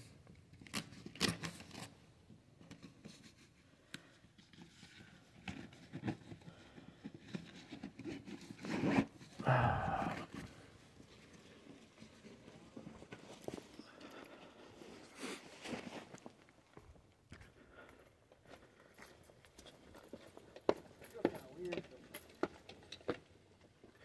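Quiet footsteps and scuffing with scattered small clicks of camera handling, as someone walks along a path.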